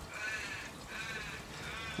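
Three faint, short calls from an animal in the background, each rising and falling in pitch, about half a second apart.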